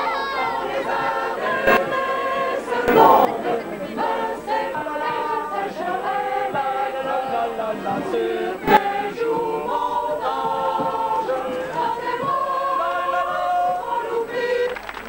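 A group of people singing together as a choir of many voices. A few short knocks cut through, the sharpest about nine seconds in.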